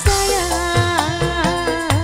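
Live dangdut band playing: a woman sings a wavering, ornamented melody over keyboards and hand-drum beats, with a cymbal crash right at the start.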